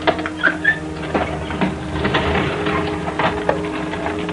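Irregular rustling and light clicks of things being handled, sharpest in the first second, over a low held note of background music.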